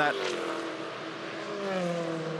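A pack of V8 Supercars racing by at high revs. Their engine note falls in pitch near the start, then holds fairly steady.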